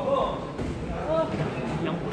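Voices shouting during a professional boxing bout, in short yells, with a few dull thuds mixed in.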